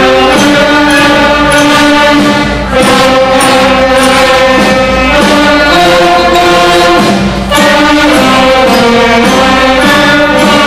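Full school concert band of flutes, clarinets, saxophones, trumpets and trombones playing together, holding long chords that change every second or two, with brief breaks between phrases.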